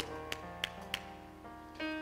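Soft background keyboard playing held chords, with a new chord coming in near the end. Three faint clicks fall in the first second, about a third of a second apart.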